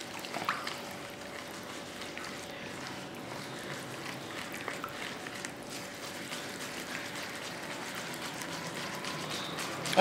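A hand mixing water into maida flour in a steel tray to start bhatura dough: quiet, wet squishing and rubbing against the metal. A faint steady hum runs underneath.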